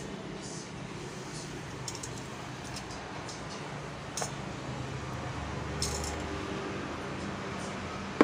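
Faint, scattered light clicks and ticks of wires and multimeter test-lead probes being handled, over a steady low hum.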